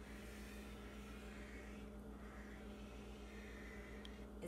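Faint room tone with a steady low electrical hum, under the soft rub of a felt-tip marker drawing curved lines on paper.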